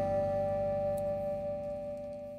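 The last chord of a rock-and-roll song ringing out on electric guitar and slowly fading away, with no new notes played.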